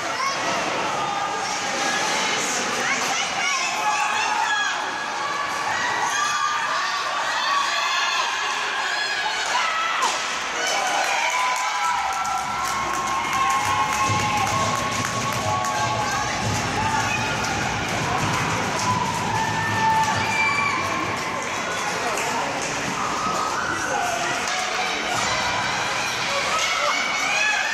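Spectators in an ice rink shouting and cheering during a youth hockey game, many voices calling out over one another, with scattered sharp knocks from play on the ice.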